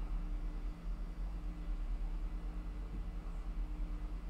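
Room tone: a steady low electrical hum over faint background hiss, with no distinct event.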